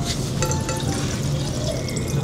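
Tap water being poured from a clear jug into a glass beaker, a steady splashing trickle.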